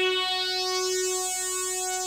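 Music: a single held synthesizer tone, slowly fading, with no drums or rhythm under it.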